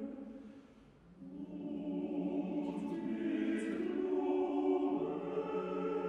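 Male choir singing in parts. One phrase dies away about a second in, and a new sustained phrase enters and swells.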